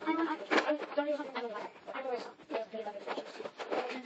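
Speech only: children's voices talking throughout.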